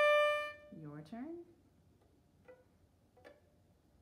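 Violin playing a bowed D on the A string at the end of a slurred B-to-D down-bow, held for under a second and then stopped. A short bit of voice follows about a second in, then quiet with a couple of faint taps.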